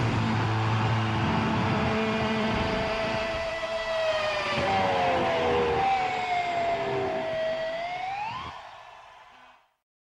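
Electric guitar feedback ringing out after the last chord of a live rock jam: long sustained tones that slide slowly downward, then bend sharply upward, fading away and cutting to silence about nine and a half seconds in.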